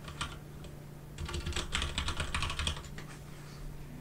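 Computer keyboard typing: one keystroke, then a quick run of keystrokes lasting about a second and a half, starting a little after a second in.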